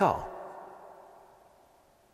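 A man's voice ending a spoken word with a falling pitch, then a fading tail that dies away into quiet room tone.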